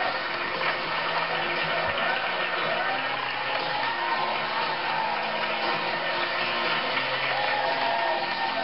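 Studio audience applauding steadily, with walk-on music underneath, heard through a television's speaker.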